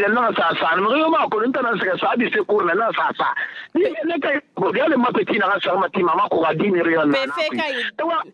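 Only speech: a person talking almost without a break, with a few short pauses.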